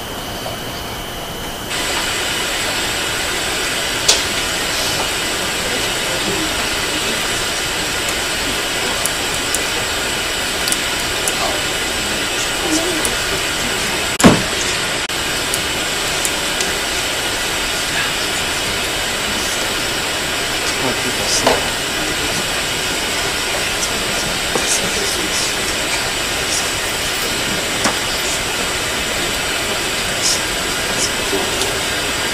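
Steady hiss of an open courtroom microphone feed, stepping up in level about two seconds in, with scattered faint clicks and knocks and one sharp knock near the middle.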